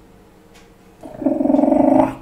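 A low, rough, growl-like voice sound starts about a second in and lasts about a second.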